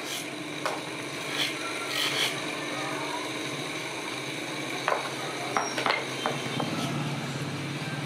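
Bench motor running steadily with a sanding drum on its shaft while the wooden block of a whitewash brush is pressed against it, wood rubbing on the abrasive. Several sharp knocks come around the middle, from the block striking the spinning drum.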